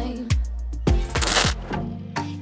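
Background pop music with a steady drum beat, and a brief bright jingle a little past halfway.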